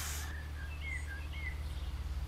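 A few short, faint bird chirps, each a quick gliding note, over a steady low hum.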